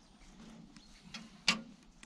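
Quiet handling of a net with a carp tangled in it on an aluminium boat deck: a few faint ticks and one sharp click about one and a half seconds in.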